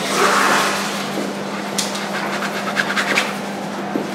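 Palette knife scraping and dragging thick oil paint across a canvas: one long rasping stroke at the start, then a few shorter scrapes.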